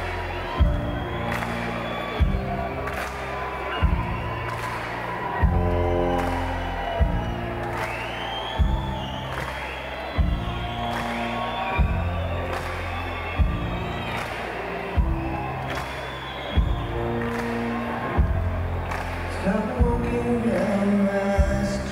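Live rock band playing a slow, heavy beat, a big drum hit about every second and a half under held chords, with the crowd cheering and whooping.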